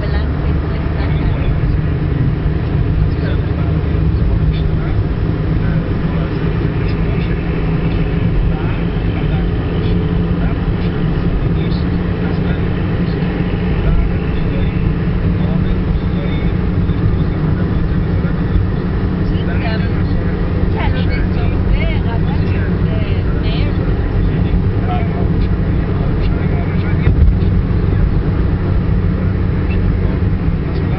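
Steady engine and tyre rumble of a car cruising on a highway, heard from inside the cabin.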